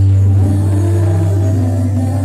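Live worship band music: a held low bass note under keyboard and group singing.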